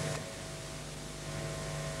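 Pause between spoken lines: only a steady electrical hum with a faint hiss, the background noise of an old video recording.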